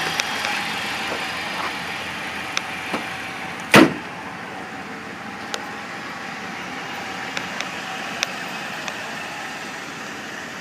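2002 Dodge Stratus engine idling steadily, just after starting, slowly growing fainter. About four seconds in, one loud slam as the hood is shut, with a few faint clicks around it.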